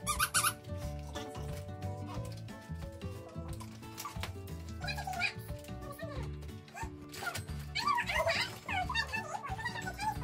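Plush squeaky dog toy squeaked repeatedly by a vizsla, in short squeals: once right at the start, a few around halfway, and a quick run near the end, over steady background music.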